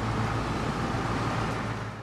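Diesel engine of an Isuzu SES rescue truck running as the truck pulls slowly forward, with a steady rushing noise over a low rumble.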